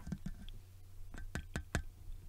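Fingers tapping and handling the body of a Comica STM01 condenser microphone, testing whether its housing is thin aluminum or plastic. A few light taps, the clearest four in quick succession in the second half.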